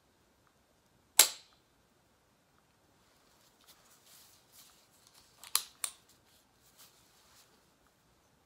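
A hyaluron pen, a spring-loaded needle-free filler injector, fires once into the chin with a sharp snap about a second in. A few seconds later come softer handling rustles and two quick clicks close together.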